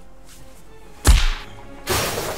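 A sharp whoosh sound effect about a second in, sweeping down in pitch into a low thud and fading quickly, over faint background music.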